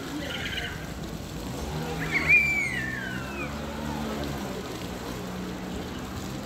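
A child's high-pitched squeal, about two seconds in, falling in pitch over about a second, with a brief higher cry near the start. Under it runs a steady low traffic hum.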